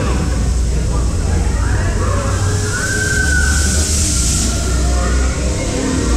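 Baron 1898 dive coaster train rolling slowly out of the station into its dark pre-lift show room, over a deep steady rumble, with voices faintly over it.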